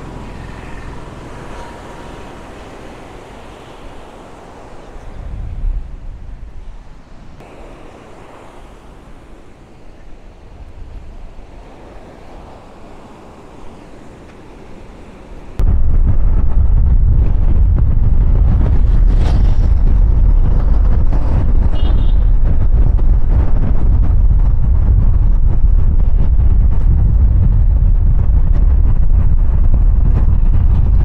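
Sea surf and light wind at the shore, then about halfway through an abrupt switch to loud, steady wind buffeting the microphone from a moving vehicle.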